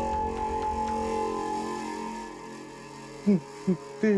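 Background music: a sustained chord held steady, fading away after about two and a half seconds, then two short spoken words near the end.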